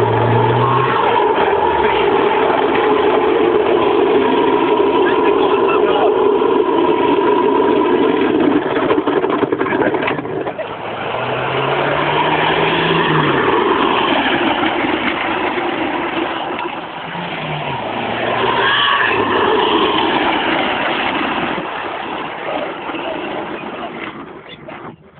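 Loud, steady vehicle running noise. It dips briefly about ten seconds in and again a little later, then falls away near the end.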